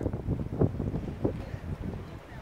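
Wind buffeting the camera microphone in uneven low rumbling gusts, with two stronger gusts in the middle.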